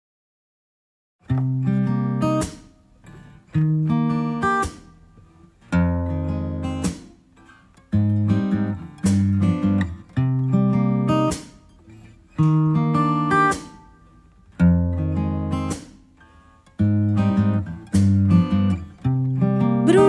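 Guitar playing the intro of a song: chords struck and left to ring out, about one every two seconds, beginning about a second in after silence.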